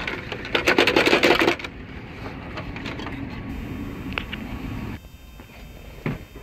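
A rapid clicking and rattling of metal and plastic for about a second as the factory head unit is worked loose in its dash brackets, followed by quieter handling noise and a few single ticks.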